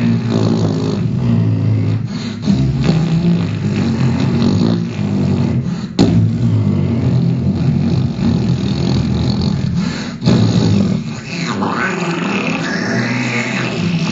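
Sound-poetry vocal performance: a man making low, throaty, buzzing voice sounds with his hands cupped around his mouth at the microphone, the pitch shifting in steps, with a sharp click about six seconds in. In the last few seconds the sound turns higher and hissier.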